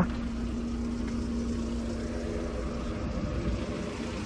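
Ford Fiesta's four-cylinder petrol engine idling steadily and evenly. It runs smoothly on all cylinders now that a new ignition coil is fitted; the burnt coil had left it firing on only three cylinders and cutting out.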